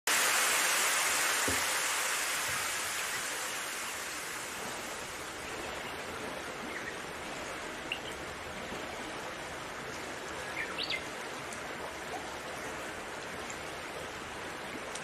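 Steady rushing ambient noise, loudest at the start and easing down over the first few seconds, with a few faint short chirps in the second half.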